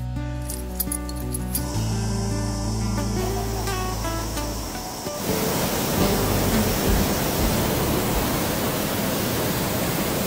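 Background music with sustained notes, which stops about five seconds in and gives way to the steady rush of a waterfall pouring down a rock face into a pool.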